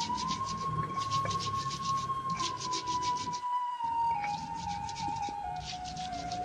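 Round stone pestle grinding red chilies and salt on a flat stone grinding slab (batu lado), in short runs of quick rasping strokes. A steady high tone runs underneath and sinks slowly in pitch in the second half.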